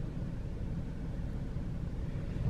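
Steady low rumble of a car running, engine and road noise heard from inside the cabin.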